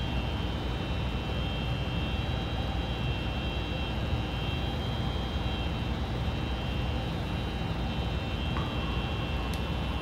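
Laminar flow cabinet's blower fan running: a steady whirring hiss with a faint high whine. A faint click near the end.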